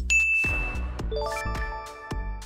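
A bright bell-like ding marking the end of the quiz countdown, followed about a second in by a quick rising run of ringing chime notes, the sparkle effect for the answer reveal, over a low music bed.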